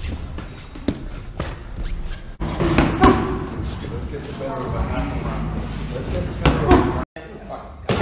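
Punches landing on boxing focus mitts: a series of sharp slaps at irregular intervals, the loudest about three seconds in and two quick ones close together near the end, with low voices in between.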